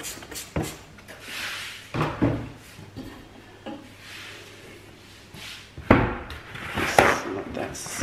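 Cleaning at a stainless steel kitchen sink: a spray cleaner squirted into the basin, among several sharp knocks and clatters of bottles and items being handled, the loudest about six and seven seconds in. A paper towel is handled near the end.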